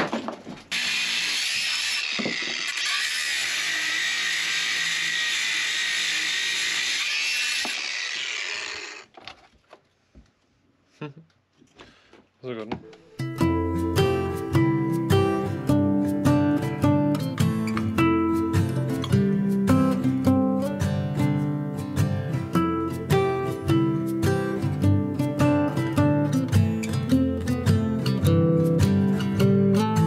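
Angle grinder grinding a rusty metal piece clamped in a vice: a steady, loud grinding for about eight seconds that then stops. After a few seconds of near quiet with a few small knocks, acoustic guitar music takes over for the rest.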